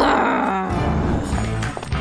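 Background music, with a cartoon character's short angry growl through gritted teeth in the first half-second.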